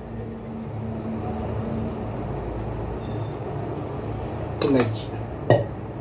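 Hot tea poured from a steel pot into a stainless-steel vacuum flask in a steady stream, then a single sharp metallic clink near the end.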